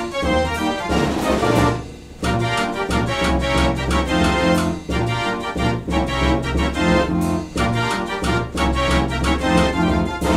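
An 84-key Mortier orchestrion (Belgian dance organ) with wooden pipes playing a tune with a rhythmic bass, with a brief break about two seconds in.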